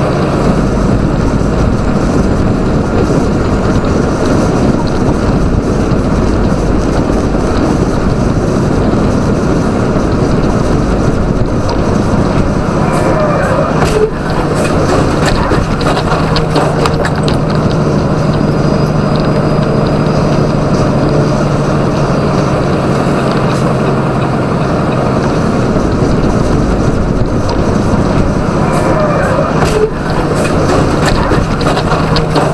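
Steady drone of a semi truck running at highway speed, heard from inside the cab: the hum of its 625 hp Caterpillar diesel engine mixed with road and tyre noise. The sound briefly drops about fourteen seconds in.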